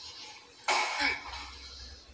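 A person coughing twice in quick succession, a little under a second in.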